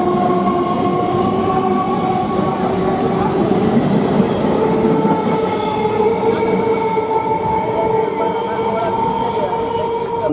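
A train running along the track: a steady rumble with sustained whining tones over it, shifting slightly in pitch partway through.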